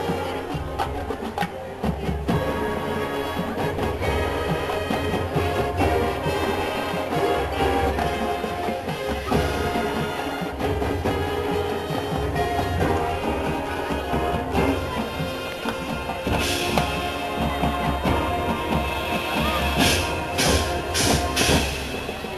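High school marching band playing a halftime show: brass and woodwinds hold sustained chords over a drumline and front-pit percussion. Several sharp percussion crashes come near the end.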